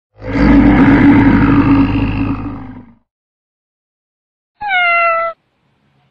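A loud animal-like roar lasting nearly three seconds and fading out. After a pause, a short single pitched call sliding slightly down in pitch.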